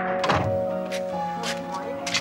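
Background music with steady held notes, and a single heavy thump with a falling low tail about a third of a second in, followed by a few fainter knocks.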